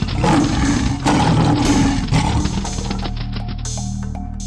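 Background music with a lion roar sound effect over it, loudest in the first half.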